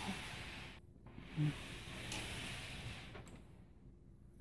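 Quiet rustling and scraping as a computer tower case is handled and turned around on a wooden desk, with a short low hum about one and a half seconds in.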